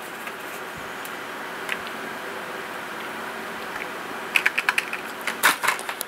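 Steady background hum of a fan or computer, with a quick cluster of small clicks and taps about four and a half seconds in and another just before the end.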